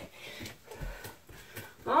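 A woman breathing hard from exertion during burpees, with a few soft thuds as she drops from standing back down into a forearm plank on a carpeted floor, the loudest thud a little under a second in.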